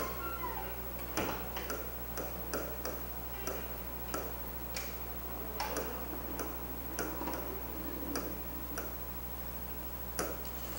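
Pen tip tapping and scratching on an interactive board while words are handwritten on it: irregular short clicks, about one or two a second, over a steady low electrical hum.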